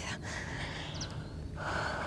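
A woman's breathing in distress, with a louder breath near the end, over a steady low background rumble.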